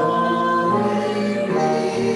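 Small mixed choir of men's and women's voices singing in harmony, holding sustained chords that move to new notes twice.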